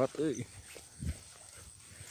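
A man's short wordless exclamation just after the start, then a brief low thump about a second in over a quiet outdoor background.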